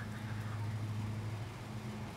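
A steady low hum, unchanging throughout, over a faint hiss.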